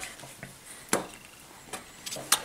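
Quiet handling sounds of a felt-tip marker: the last strokes of writing on paper, then one sharp tap about a second in as the marker is put down on the table, and a faint tick near the end.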